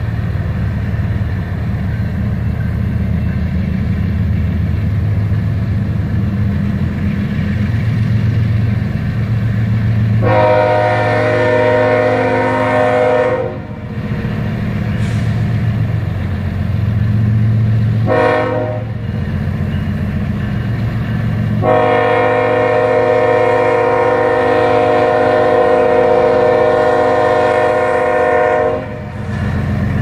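BNSF diesel freight locomotives sounding a multi-note air horn over the steady low rumble of their engines as the train reaches a street grade crossing. The horn blows three times: a long blast, a short one, then a long held blast.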